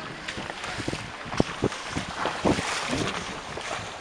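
Car driving along a muddy, potholed road with water puddles: a steady rumble from the ride with irregular knocks and splashes as it jolts through ruts, loudest about halfway through.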